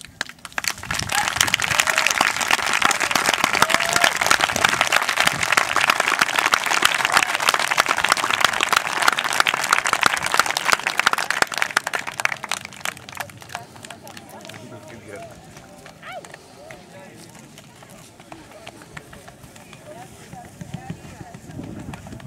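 Crowd clapping, starting about a second in and dying away after about ten seconds, with voices mixed in; afterwards scattered talk.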